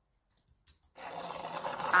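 Sample of plastic being dragged across a floor, played back through speakers: a juddering scrape that starts about halfway through and grows louder.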